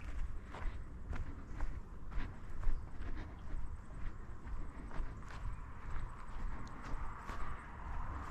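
Footsteps of a person walking along a bush track, an even crunching tread at about two steps a second.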